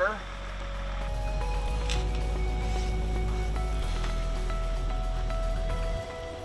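Background music: held notes that change pitch every second or so over a steady deep bass, swelling up over the first second.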